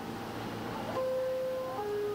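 New York City subway car door chime: a higher electronic note followed by a lower one, each a little under a second, over a low steady rumble.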